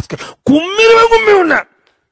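A man's voice through a handheld microphone: a brief word, then one long wailing cry of about a second whose pitch rises and then falls.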